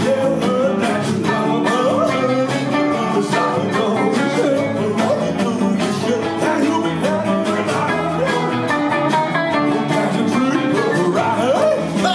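A live rock-and-roll band playing electric guitars, bass guitar and keyboard, with a male lead vocalist singing over them.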